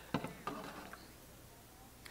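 A few faint, short clicks in quick succession in the first half-second, then quiet room tone.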